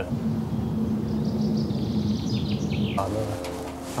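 Steady low drone of a helicopter overhead, with a run of high, falling bird chirps from about a second in.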